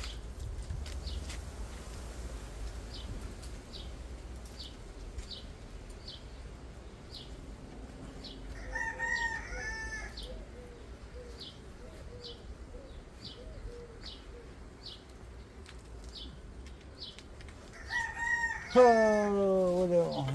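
Birds calling: a small bird gives a short high chirp about once a second, and a louder, lower call comes once about nine seconds in and again near the end, where it falls in pitch.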